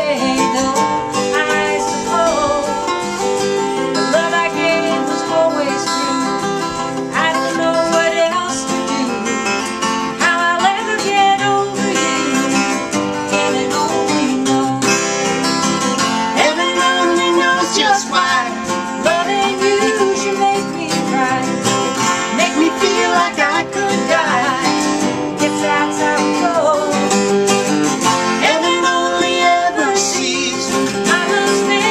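Two acoustic guitars played together in an Americana-style duet, with a woman singing the melody over them.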